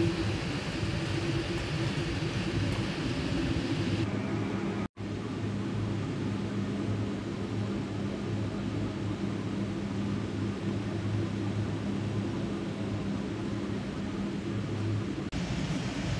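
Prawns sizzling in sauce in a wok for the first few seconds. A brief dropout about five seconds in is followed by a steady machine hum with a low drone.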